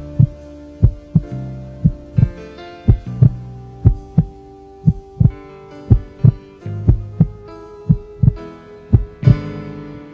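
Heartbeat sound effect in the soundtrack: a double thump about once a second, over held background music tones.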